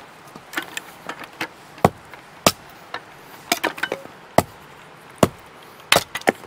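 Firewood being chopped and handled: sharp wooden knocks at irregular intervals, some single and loud, others in quick clattering clusters.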